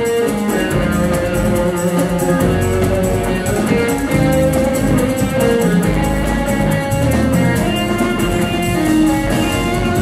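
Live band playing an instrumental passage at full volume: electric guitars, electric bass and keyboards over a drum kit, with a steady cymbal beat and no singing.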